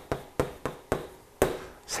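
Chalk tapping and knocking against a chalkboard while writing: a string of about six or seven sharp, unevenly spaced taps.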